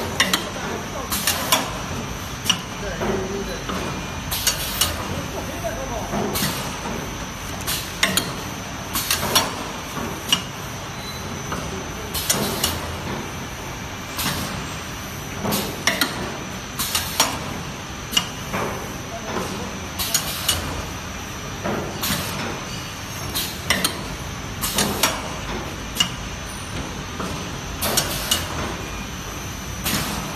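Paper muffin cup forming machine running: a continuous mechanical din broken by sharp strokes of its pneumatic cylinders and forming press about every one and a half to two seconds, often in quick pairs.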